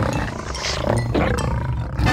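A lion's roar sound effect: a cartoon lion roaring at close range.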